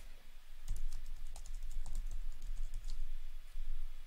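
Typing on a computer keyboard: a quick run of key clicks, an email address being entered, starting about a second in and stopping shortly before the end.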